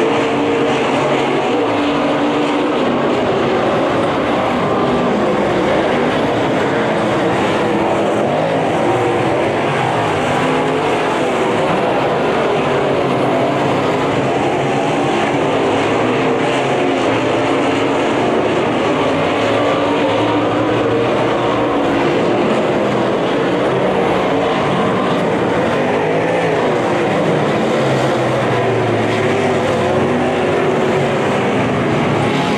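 USRA Modified dirt-track race cars' V8 engines running as several cars lap the oval, their pitch rising and falling continuously as they go down the straights and through the turns.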